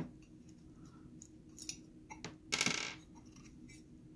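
Light metallic clicks, then a short metal scrape and rattle about two and a half seconds in, as the stamped sheet-metal bottom cover plate is taken off a Honeywell VR9205 gas valve body.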